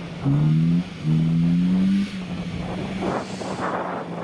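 A Vauxhall Corsa's engine revved in two short bursts, each rising in pitch, as the car fights for grip on loose grass. After about two seconds the revs drop to a steadier, quieter run, and a rushing hiss builds near the end.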